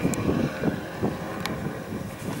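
Renault hatchback slalom car's engine pulling away up the course under acceleration, with wind on the microphone.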